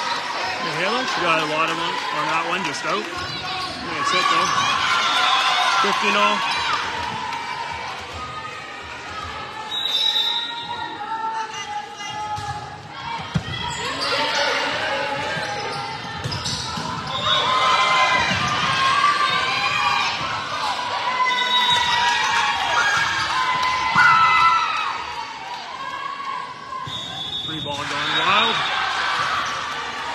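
An indoor volleyball match in a large gym: the ball being bounced and struck, with players and spectators calling out across the hall.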